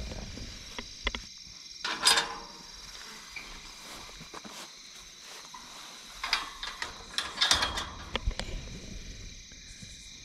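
Crickets trilling steadily, with a metal fence gate clanking and rattling about two seconds in and again in a burst of clanks between about six and eight seconds in.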